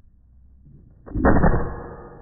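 A single rifle shot about a second in, followed by the lingering ring of a struck steel target.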